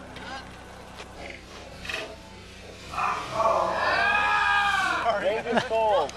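Excited shouting and yelling from several people, quiet at first and breaking out loudly about three seconds in, with short whooping cries near the end.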